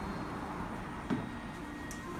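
A steady low background rumble, with one short sharp knock about a second in.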